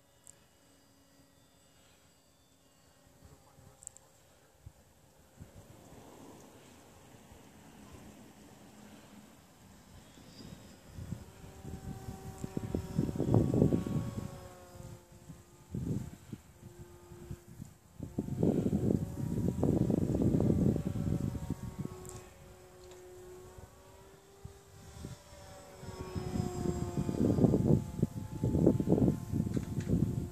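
Radio-controlled model of an L-19 Bird Dog airplane flying, its motor and propeller giving a steady droning hum that shifts slightly in pitch as it manoeuvres. The hum is faint at first and grows louder. Several loud, low rushes of noise come in the second half.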